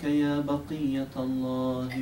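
A man's voice chanting a melodic recitation, holding long notes that step slightly lower one after another, with a brief break for breath just after a second in.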